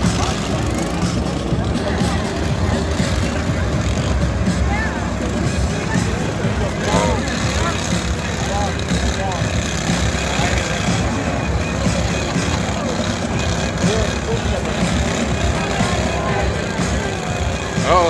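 Several small lawn tractor engines running and revving together in a steady, dense rumble, mixed with crowd voices.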